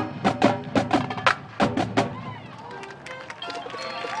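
Marching band percussion playing a run of sharp, loud hits, about eight strikes in the first two seconds, right after the band's held chord cuts off. The music then drops to a quieter, sparse stretch.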